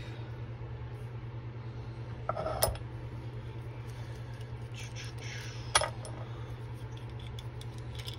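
Metal parts of an aluminum lure mold clinking as the halves are pulled apart and handled. There are a couple of sharp metallic clicks, one about two and a half seconds in and one near six seconds, over a steady low hum.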